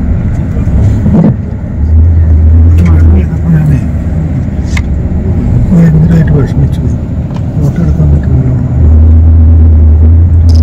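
Road traffic: a motor vehicle engine rumbling close by, swelling louder about two seconds in and again near the end.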